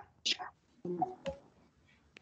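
Quiet, brief muttered speech: two short spoken bursts, the first just after the start and the second about a second in, with pauses between.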